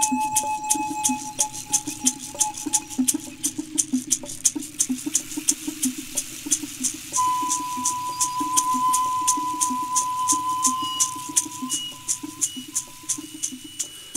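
Ceremonial music: a shaker rattle beating steadily, about four strokes a second. From about halfway a high held tone sounds over it.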